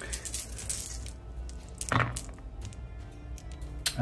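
A handful of six-sided dice clicking together in the hand and rolled into a folding dice tray, landing with a louder thump about halfway through. Background music plays underneath.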